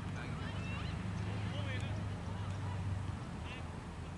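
Outdoor ambience: a steady low hum with faint voices and short, high, scattered calls over it.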